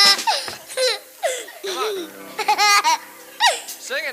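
A small boy laughing helplessly into a microphone, high-pitched, in about five short fits of giggles one after another.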